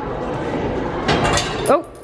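A hand-wheel-cranked, coin-operated souvenir-making machine giving a short burst of metallic clinking about a second in, over steady hall noise.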